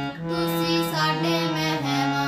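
A harmonium played with both hands, its reeds sounding sustained chords that step to new notes every half second or so, with a girl singing along. The sound dips briefly just after the start as the notes change.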